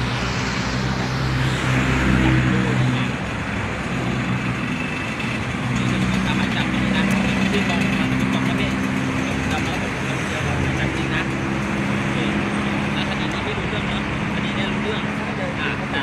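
Steady street traffic with an engine running close by, under men talking.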